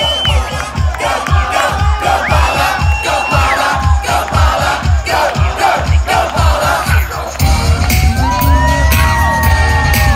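Loud live pop dance music from a concert sound system, with a pounding drum beat, under a cheering crowd. A heavier bass comes in about seven seconds in.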